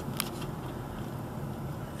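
Steady low rumble of a car's engine and tyres heard from inside the cabin while driving, with one short click a fraction of a second in.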